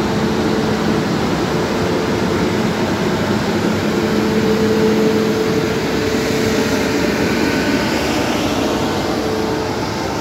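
Indian Railways WAP-7 electric locomotive rolling slowly past at close range, its running noise topped by a steady electric hum that moves to a higher note about halfway through.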